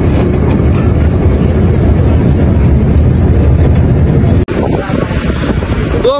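Loud, steady rush of wind and road noise from a coach travelling at highway speed, with wind hitting the microphone. It cuts off abruptly about four and a half seconds in, giving way to a quieter vehicle rush.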